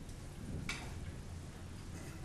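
A single sharp click about two-thirds of a second in, over a low steady hum.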